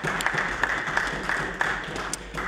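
Members of a legislative chamber applauding after a question: a dense, steady patter of many hits from across the room.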